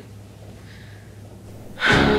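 A woman's faint breath over a steady low hum, then music comes in suddenly near the end.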